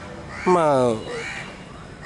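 A man's voice makes one drawn-out sound with falling pitch about half a second in, and a crow caws faintly in the background.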